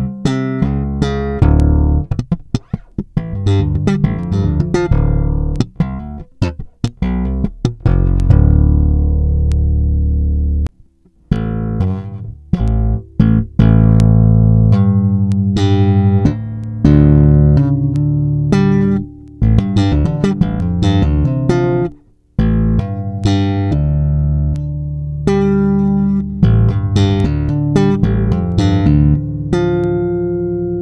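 Electric bass played slap style: a fast riff of thumb slaps and popped strings with sharp percussive clicks. Around eight seconds in, it settles on a held low note that stops just before eleven seconds. After a short pause the riff resumes, with another brief break a little past the twenty-second mark.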